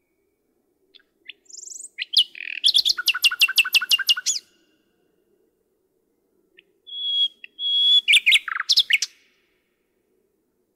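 Common nightingale singing two song strophes with a pause of about two seconds between them. The first opens with a few soft clicks and a short high buzzy note, then runs into a rapid series of about ten loud repeated notes; the second opens with two drawn-out steady whistles and ends in a quick burst of louder, harsher notes.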